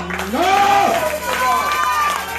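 Voices praying aloud, with one long drawn-out cry about half a second in, over a steady low sustained tone.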